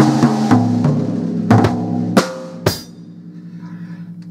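Acoustic drum kit played with sticks: a run of loud strikes on the snare and drums over the first three seconds, the shells ringing on beneath them, then dying down to a quieter ring.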